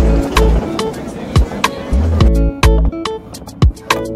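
Background music with a heavy bass beat and sharp drum hits.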